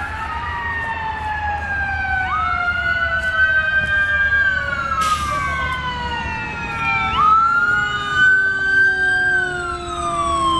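Emergency vehicle sirens wailing, several overlapping, each slowly rising then falling in pitch about every five seconds, while one lower tone winds steadily downward. A brief burst of noise sounds about halfway through.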